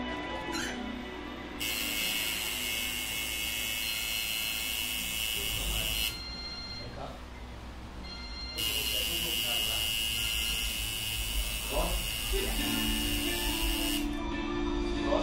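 Electric tattoo machine buzzing as the needle works into skin. It runs in two stretches, about four and five seconds long, with a pause of a couple of seconds between, and each stretch starts and cuts off suddenly.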